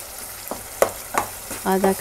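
Wooden spoon stirring and scraping potato halwa in a pan of hot ghee and sugar syrup, over a steady sizzle, with a few sharp knocks of the spoon against the pan.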